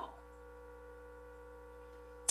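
Faint, steady electrical hum made of several even tones at once, with no other sound in the room.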